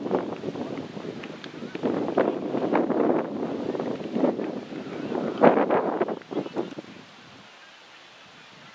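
Wind noise on the microphone mixed with indistinct outdoor voices, falling away to a low steady hiss about seven seconds in.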